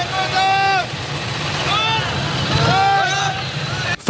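A formation of Indian Challenger motorcycles' V-twin engines running at low speed, a steady low rumble, with a man's voice shouting several drawn-out commands over it.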